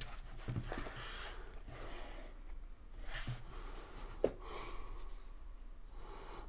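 Quiet rustling and handling noises as a handheld smartphone gimbal is taken out of its protective packing and turned over in the hands, with a small sharp click about four seconds in.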